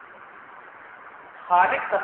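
Steady hiss of recording noise, then a man's voice starts speaking about one and a half seconds in.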